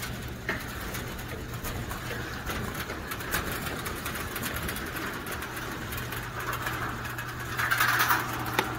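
Worm trommel running: a steady low hum from its drive, with worm castings sifting through the rotating screens and falling into the bins below as a soft hiss dotted with light ticks.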